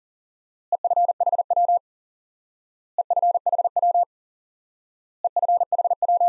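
Morse code sidetone at 40 words per minute keying the abbreviation EFHW, short for end-fed half-wave antenna, in a single steady beep. It is sent three times, about two seconds apart, each group lasting about a second, and the third is still sounding at the very end.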